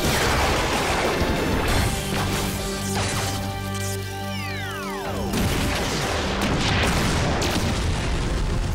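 Sound effects of a giant robot's energy-weapon blast and explosions, over dramatic background music, with a falling whistling sweep about halfway through.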